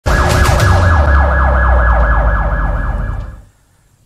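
Emergency siren in a fast yelp, a falling sweep repeating about four times a second over a low rumble, fading out near the end.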